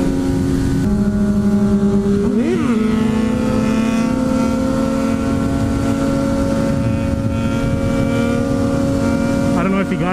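Sport bike engines running under way with heavy wind rumble on the camera's microphone, while the blue Yamaha sport bike alongside is held up in a wheelie. The engine note drops about a second in, blips up and back down about two and a half seconds in, then holds a steady note that climbs slowly.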